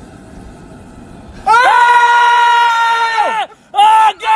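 A man screaming in pain, a high-pitched cry held for about two seconds from halfway in, then short yelps near the end, as a blue crab's claw pinches his nipple.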